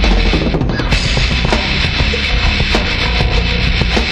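Heavy metal band recording playing an instrumental passage: dense, loud distorted guitars, bass and drums, with a brief drop in the high end just under a second in.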